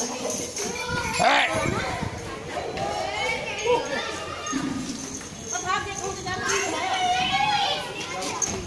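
Several children talking and calling out over one another, with a sharp high rising shout about a second in.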